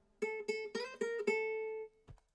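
A short melodic guitar riff played back from the beat project: about five picked notes, the last one held and then cut off suddenly near the end. It is treated with flanger and vintage-style reverb.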